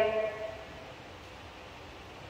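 A woman's amplified voice on drawn-out, held tones ends about half a second in, leaving quiet room tone with a faint reverberant hum for the rest.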